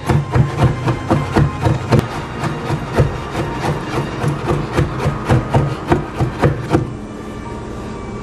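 Kitchen knife chopping green jackfruit on a wooden cutting board: a quick, irregular run of blade strikes, several a second, that stops about seven seconds in.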